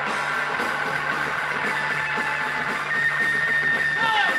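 Live rock band playing: loud electric guitars with held, ringing notes over a steady low note, and a long high tone coming in about three seconds in.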